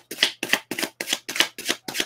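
A deck of tarot cards being shuffled by hand: a quick, even run of card slaps, about five a second.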